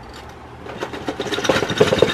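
Loose plastic parts of a vintage IMC model car kit rattling inside the cardboard kit box as it is shaken, a quick run of clicks that grows louder through the second half.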